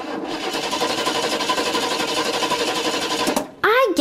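Sound effect of a car engine cranking on its starter without catching, a rapid, steady mechanical chatter that cuts off abruptly about three and a half seconds in: the car refusing to start.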